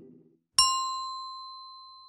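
Outro logo sound effect. A short low note fades away at the start; then, about half a second in, a single bright bell-like ding strikes and its tone rings on, slowly fading.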